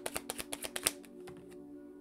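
A deck of cards being shuffled in the hands: rapid card clicks, about ten a second, that stop about a second in. Soft background music with held notes plays underneath.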